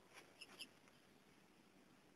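Near silence, with three faint short clicks in the first two-thirds of a second.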